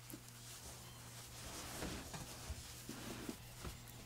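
Faint, soft rustling and handling of a small felt garment as it is turned inside out, a little busier in the second half, over a low steady hum.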